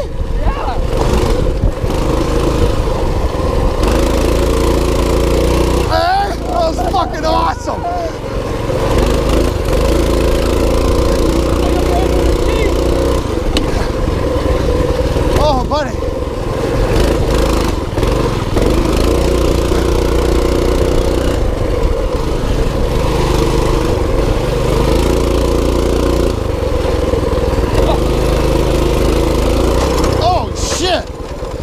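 A mini bike's small engine running under way, its note stepping up and down as the throttle is worked.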